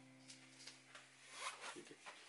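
Near silence with a faint low hum, then a few soft, brief rustles of movement in the second half.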